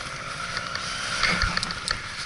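Trials motorcycle engine running steadily at idle, with scattered clicks and a dull knock about one and a half seconds in as the fallen bike is handled.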